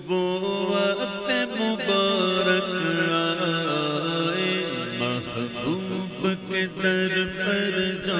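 Devotional naat chanting: a male voice holding long, wavering, melismatic notes over a steady low drone, with no instruments marked out.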